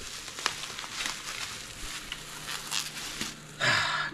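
Bubble wrap crinkling and crackling as a wrapped piece is handled and unwrapped, with a few sharp clicks.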